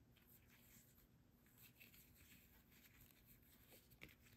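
Near silence, with faint soft rustles of a fabric ribbon being handled as it is tied into a knot.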